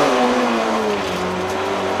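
Rally car engine heard from inside the cockpit, its revs falling as the car slows for a slow right-hand corner, with a step down in pitch about a second in, then running steady at low revs.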